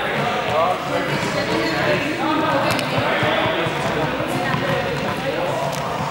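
Indistinct voices of several people echoing in a large sports hall, with a few sharp knocks in the middle.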